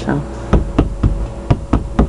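Five quick taps on a stretched canvas painting, three then two: the canvas is drum-tight, its tear patched and the bulge gone.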